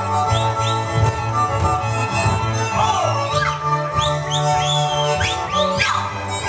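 Live Slovak folk string-band music accompanying the dancing: fiddles over a stepping bass line. From about the middle onward come high whoops that swoop up and down.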